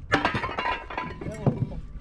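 Scrap metal clanking as heavy junk is unloaded from a truck bed: a sharp clatter just after the start and another knock about a second and a half in, with a man's voice between.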